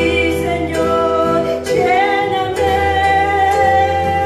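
A woman singing a Spanish-language worship chorus into a microphone, accompanied by guitar and keyboard through a PA. She holds one long note through the second half.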